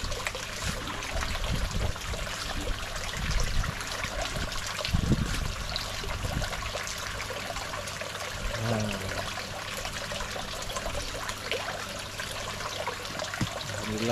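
Water trickling and splashing steadily into an aquaponics fish pond, with a low thump about five seconds in.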